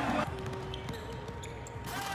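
Faint sound of an indoor basketball game: a few short knocks and squeaks of play on the court over a steady background, with a brief rush of noise near the end.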